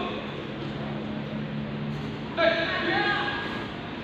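A loud voiced shout about two and a half seconds in, lasting about a second, over a steady murmur and hum of a large sports hall.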